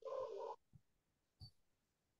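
A brief burst of garbled, buzzing audio coming through a video call, about half a second long, from a participant's failing microphone.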